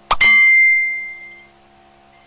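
A single bell-like ding: a sharp strike with a clear high ringing tone that fades away over about a second and a half.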